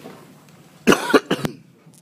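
A person coughing close to the recording device: one loud cough in two quick bursts about a second in.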